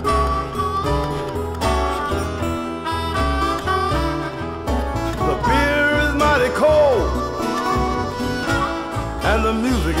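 Blues song with a backing band between sung lines: an electric guitar fill with bent, sliding notes over a steady bass line.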